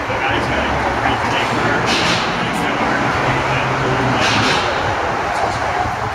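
Steady, loud vehicle rumble with a low hum underneath, and two short hissing bursts about two and four seconds in.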